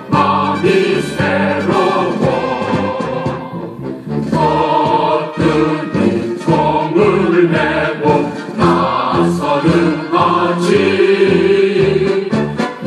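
Korean military song sung by a choir with instrumental accompaniment, at a steady marching beat.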